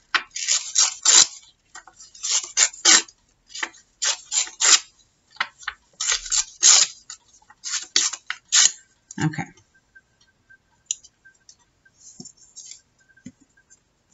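Scraps of patterned craft paper torn by hand, the straight edges ripped off: a quick run of short rips for about nine seconds, then only faint paper rustles.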